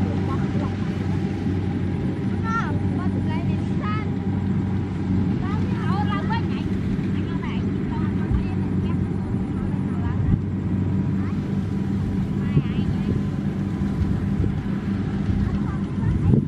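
A combine harvester's diesel engine running steadily, a low even hum. Short high gliding calls sound over it during the first half.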